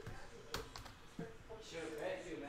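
Two sharp computer mouse clicks, about two-thirds of a second apart, as browser tabs are switched. A faint low murmur of voice follows near the end.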